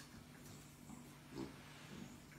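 An English bulldog gives one short grunt about one and a half seconds in while on its back having its belly rubbed. A faint steady hum sits underneath.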